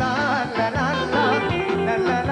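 Live band playing Yemenite-style Israeli pop: a wavering, heavily ornamented lead melody over steady bass notes and drums.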